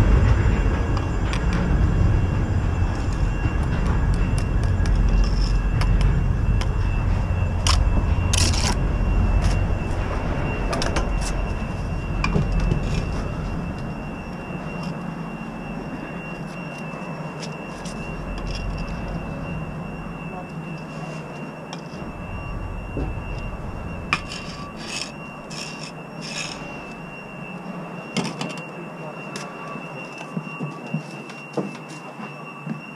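Bricklaying work: scattered knocks and clicks of bricks being set and tapped down, with a spirit level and steel trowel against brick and mortar board. Under it a low rumble fades out about halfway through, and a thin steady high tone runs throughout.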